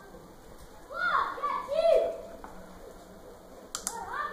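A high-pitched voice speaking briefly in the background, about a second in, then two quick clicks close together near the end.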